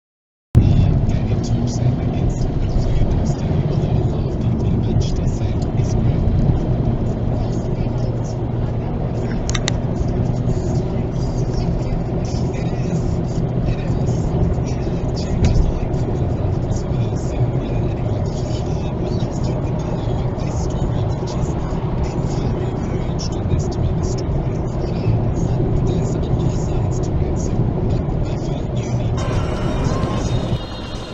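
Steady road and engine rumble inside a car cruising at about 42 mph, picked up by the dashcam's microphone. It starts abruptly about half a second in.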